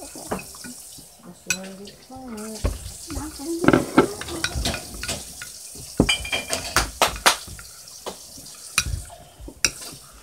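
A spoon stirring slime mixture in a glass bowl, with irregular sharp clinks and knocks against the glass. A short laugh comes about two seconds in.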